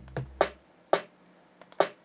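Programmed drum pattern playing back from a beat-making program: an 808 kick's deep boom dying away in the first half second, then three short, sharp drum hits with quiet gaps between them.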